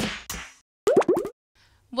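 End of an electronic channel-intro sting: a last drum-machine hit fading out, then about a second in a short sliding, pitch-bending sound effect.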